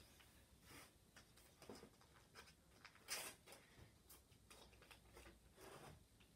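Faint rustling and light taps of painter's tape being handled and pressed down onto card stock, a little louder about three seconds in.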